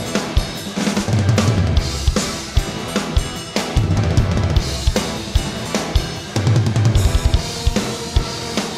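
Yamaha drum kit with Zildjian cymbals played hard in a fast rock groove: kick, snare and cymbals, with a quick run of kick-drum strokes near the end. Sustained low bass and guitar parts of the song's rough mix run under the drums.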